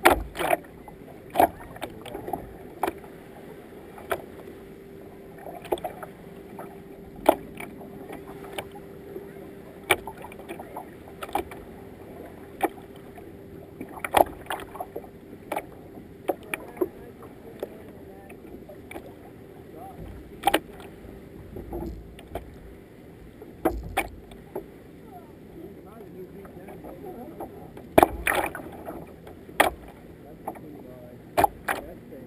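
Kayak paddle strokes in a steady rhythm, a sharp sound about every one and a half seconds as the blades catch the water on alternate sides, over water washing along the hull. A faint steady hum runs underneath from about six seconds in to about twenty-one.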